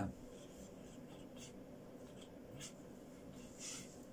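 Quiet pause in a small studio room: faint room tone with a few soft, brief rustling noises.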